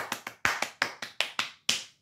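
One person clapping hands quickly, about nine sharp claps in a row that stop shortly before two seconds in.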